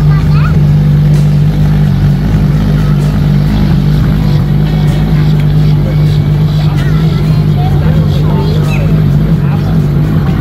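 Ferrari LaFerrari's V12 engine running at low revs as the car creeps along at walking pace: a loud, steady low drone with no revving.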